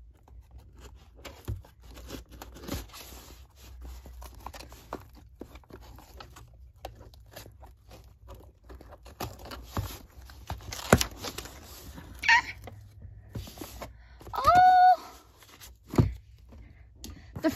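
Cardboard shipping box being handled and opened by hand: rustling, scraping and tearing of packing tape and paper, with scattered small taps and one sharp click about eleven seconds in. A brief high squeal comes twice in the last few seconds.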